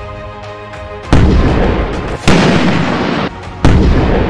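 Background music with sustained tones, then, about a second in, three loud explosion blasts about a second and a quarter apart. Each is a sudden crack with a noisy rumble, and the first two cut off abruptly.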